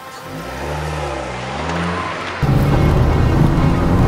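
A hatchback car's engine revving, its pitch rising and falling. About halfway through, a much louder sound cuts in suddenly and holds steady, with background music throughout.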